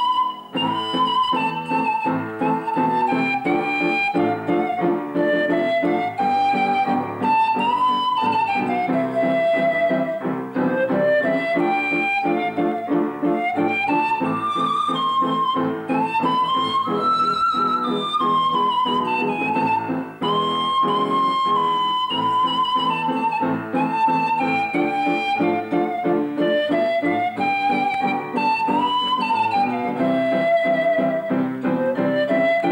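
Pan flute playing a melody that rises and falls in phrases, over an upright piano accompaniment of steadily repeated chords.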